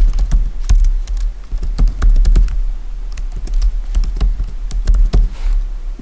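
Computer keyboard typing: a run of quick, irregular keystrokes as a username and password are entered, over a steady low hum.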